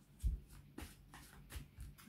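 A deck of tarot cards being shuffled by hand: a run of soft, irregular taps and flicks of the cards.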